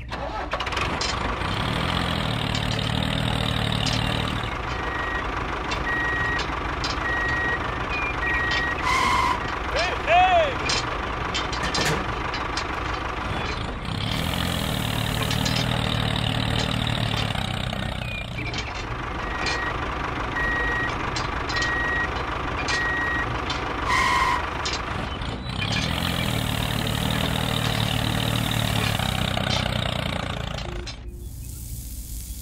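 Heavy truck engine running, with a reversing beeper sounding about twice a second in two stretches of about four seconds each; the same sequence repeats about every twelve seconds like a looped sound effect.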